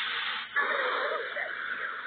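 A breathy whoosh sound effect for a TV news "LIVE" graphic transition, in two swells: a short one, a brief dip about half a second in, then a longer one that fades a little near the end.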